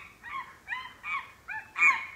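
A person voicing the monkeys' reply in high-pitched, monkey-like chatter: a quick run of about five or six short squeaky calls, each rising and falling in pitch.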